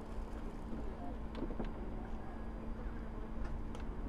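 Steady low outdoor rumble with a faint even hum underneath, and a few light clicks from a phone being handled and tilted.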